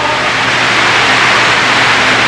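Steady loud hiss with a faint low hum underneath, and no voice over it.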